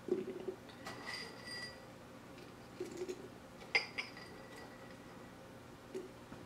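Faint handling of a soft rubber dog food toy as small treats are pushed into it, with two light glass clinks, about a second in and near four seconds, each ringing briefly.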